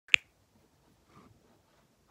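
A single sharp click just after the start, as hands handle and position the phone camera, followed by faint handling noise.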